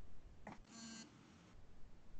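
A short, faint electronic beep, a chime of several steady tones held for under half a second, from the computer on the video call. A soft click comes just before it.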